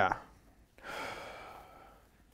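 A man's long breathy sigh, starting about a second in and fading away.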